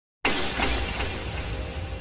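Glass-shattering sound effect that starts suddenly about a quarter of a second in and slowly dies away over a low rumble.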